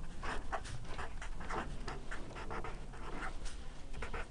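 Felt-tip marker writing on a paper pad: a faint run of short, scratchy strokes, several a second, as words are written out.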